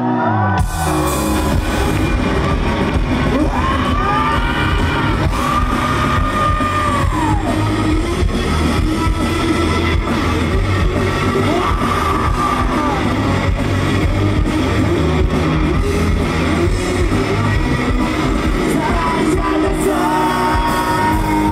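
Live rock band playing loud: distorted electric guitar, bass and drum kit. The full band comes crashing in about half a second in.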